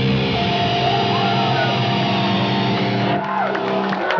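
Live rock/metal band's final electric guitar chord ringing out, with a high wavering, sliding note above it. The low end cuts off about three seconds in, ending the song.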